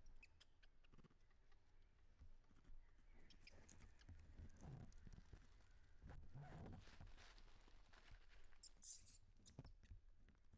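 Near silence: faint outdoor ambience with soft scattered clicks and scuffs, and a brief high-pitched sound near the end.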